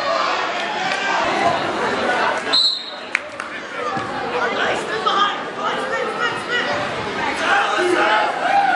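Spectators talking and calling out together, echoing in a gymnasium, with a short high whistle blast about two and a half seconds in as the referee starts a youth wrestling bout.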